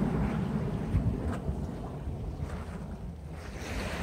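Wind buffeting the microphone with a low rumble over the soft wash of small waves at the shoreline of a calm bay.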